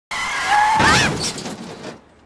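Tyres screeching under sudden braking mixed with the noise of a car crash, a rear-end collision. It starts abruptly, is loudest around the first second and dies away within about two seconds.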